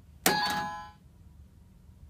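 A toy quiz answer buzzer pressed, giving a two-note electronic ding-dong chime that rings out in under a second.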